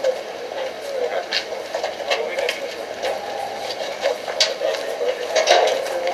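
Indistinct voices of people talking in the background, with a few short clicks or rustles.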